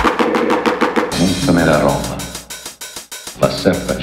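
Mid-1990s gabber (hardcore techno) track in a breakdown. The heavy distorted kick drum drops out at the start, leaving a rapid snare roll under a sampled spoken voice. The level dips low for a moment about three seconds in before the voice and drums return.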